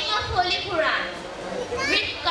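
Speech only: a girl speaking, with no other sound standing out.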